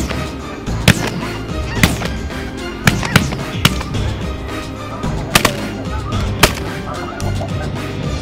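Geese honking over background music, with several sharp cracks spread through.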